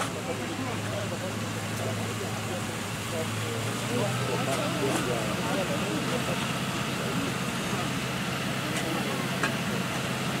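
Water curtain: a hose-fed nozzle throwing a tall column of spray with a steady hiss, over the steady hum of the fire engine's pump running, its note stepping up slightly about four seconds in. Voices talk in the background.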